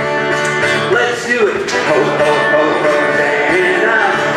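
Acoustic guitar strummed in a lively, upbeat children's sing-along, with voices over it.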